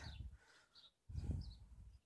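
Quiet outdoor garden ambience in a pause between words: a short low rumble about a second in, with a few faint, high bird chirps in the distance.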